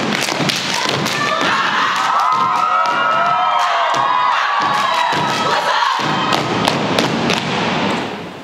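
A step team stepping in unison: rapid, rhythmic foot stomps and hand claps on a stage floor, with shouting voices over the middle. It all stops sharply at the end.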